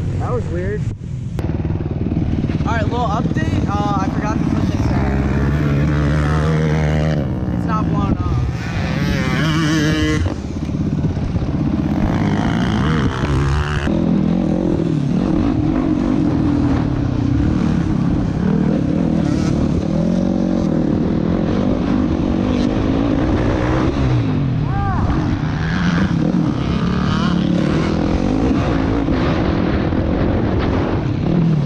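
Sport quad's engine revving up and down as it is ridden hard, its pitch rising and falling with the throttle, with a voice heard over it through roughly the first half.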